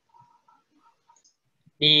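A few faint, short clicks of a computer mouse, then a man begins speaking near the end.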